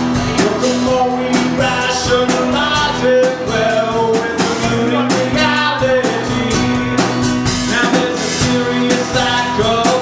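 Live band music: a man singing over a strummed acoustic guitar, with a drum kit and cymbals keeping a steady beat.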